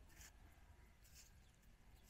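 Near silence, with two faint soft cuts of a cleaver slicing through dragon fruit flesh held in the hand.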